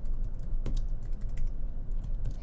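Typing on a computer keyboard: a run of irregular keystroke clicks over a low steady hum.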